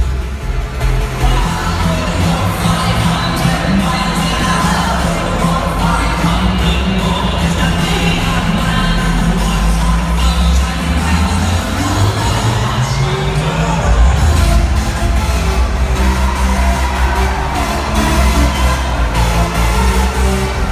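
Electronic dance remix played loud over a club sound system: a stretch of held synth chords, then a rising sweep that builds until the full beat comes back in about fourteen seconds in.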